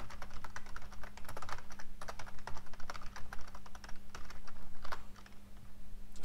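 Computer keyboard typing: quick, irregular keystrokes with a brief lull about five seconds in, over a faint steady hum.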